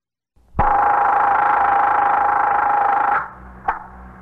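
Telephone bell ringing in one steady ring of about two and a half seconds, followed about half a second later by a single sharp click as the receiver is picked up, with a low hum after it, on an old radio-drama recording.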